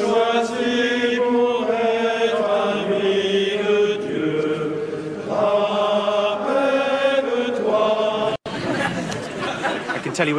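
A choir chanting at mass: several voices holding long sung notes that step from pitch to pitch. A short cut just after eight seconds in breaks it off, and a rougher, noisier sound follows.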